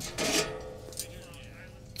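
Faint metal clinks and scraping as a stainless steel grill grate is handled and lifted out of the grill, with a light knock near the start and another about a second in, over a faint steady hum.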